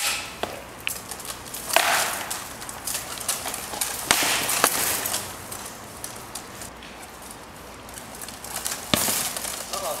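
SCA heavy-combat sparring: several sharp, irregularly spaced knocks of rattan weapons striking a shield and armour.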